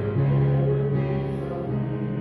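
Congregation singing a hymn in slow, held notes, the melody stepping up to a new note just after the start.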